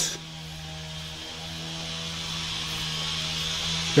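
A motorised wood saw running steadily in the distance as it cuts firewood: an even drone with a high hiss that slowly grows louder.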